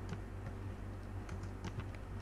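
Computer keyboard being typed on: a handful of scattered, unevenly spaced key clicks over a steady low hum.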